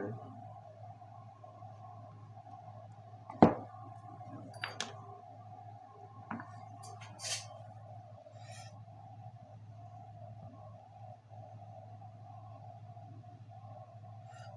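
Hands working aluminium foil tape over a stainless steel mesh pattern: a single sharp knock about three seconds in, a few light clicks, then short crinkles of the thin foil as it is peeled and handled, over a steady low hum.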